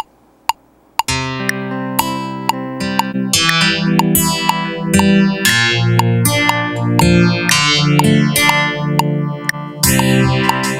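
Korg Kronos sequencer playing back a guitar part over a metronome click twice a second; the guitar comes in about a second in, run through insert effects (bass amp model, phaser and multiband mod delay) that are being switched into the chain as it plays.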